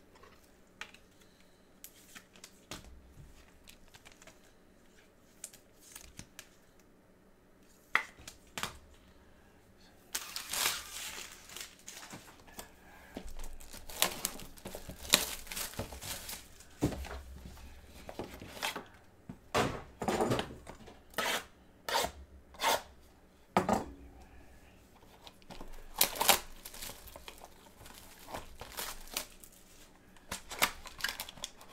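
Clear plastic shrink-wrap being torn and crinkled off a trading card hobby box, in sharp irregular crackles that start about ten seconds in; before that only a few faint clicks of handling.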